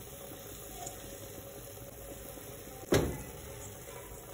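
A spatula knocks once against a frying pan of chicken pie filling, sharply and loudly, near the end. A steady low hum runs underneath.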